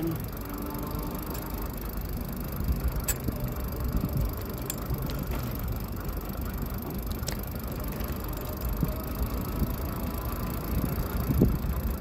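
Juiced Scorpion X e-bike with a sidecar riding along at seven to eight miles an hour: a steady rumble of its 20 by 4 fat tyres and the ride, with a few light ticks.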